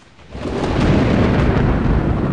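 Snow avalanche rumbling down a mountain face: a deep, dense rush that swells up out of silence within the first half second and then holds steady and loud.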